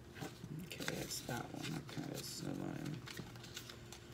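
Paper pages of a small guidebook being turned, giving light clicks and rustles, with a quiet indistinct voice murmuring over them.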